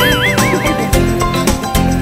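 Background guitar music with a steady beat. Right at the start, a short rising whoosh runs into a warbling, wavering tone lasting under a second: an editing sound effect laid over a transition.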